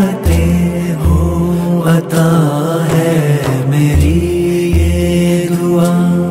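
The devotional dua (a naat-style song) playing: held, chant-like singing over a deep bass that comes and goes in blocks.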